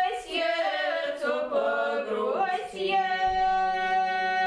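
Small ensemble of women's voices singing a Russian romance a cappella, drawing the words out over several notes. From about halfway through they hold one long steady note.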